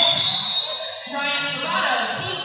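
A referee's whistle: one high, steady blast lasting about a second, over the voices of a large hall.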